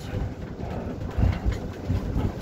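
Ambulance patient compartment on the move: a low rumble with irregular thumps and rattles, heaviest in the second half.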